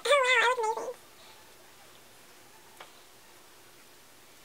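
A woman's brief, high, warbling vocal note with a wobbling pitch, under a second long. A faint click follows about three seconds in.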